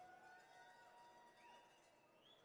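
Near silence, with only a few faint thin held tones.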